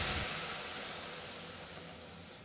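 Boiled milk poured into a hot stainless steel pan of vermicelli fried in ghee, sizzling and hissing as it hits the hot pan. The hiss starts suddenly and fades steadily as the milk covers the pan.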